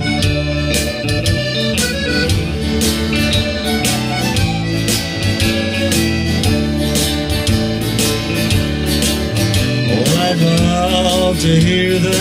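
Live country-folk band playing an instrumental passage between verses: a strummed acoustic guitar and an electric guitar, with an accordion carrying the melody over a steady beat.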